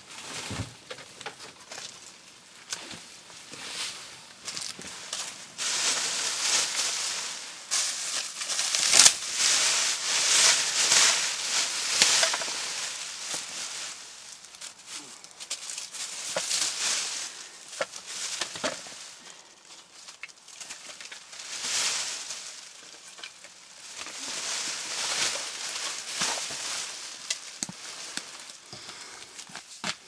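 Plastic bags and sheeting rustling and crinkling in repeated swells, with scattered clicks and light knocks, as things are handled and shifted about. It is loudest in the middle stretch.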